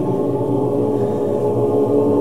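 A choir of many voices chanting together, holding long, steady tones on several pitches at once to make a continuous vocal drone.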